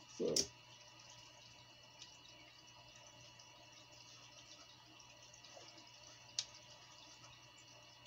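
Near silence: faint steady hum and hiss of room tone, with a single sharp click about six and a half seconds in.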